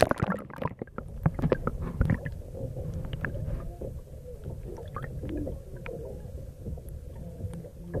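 Seawater heard through a camera held underwater: a muffled low rumble, with a burst of splashing clicks and crackles as the camera goes under near the start, then a steadier murky wash with scattered small clicks.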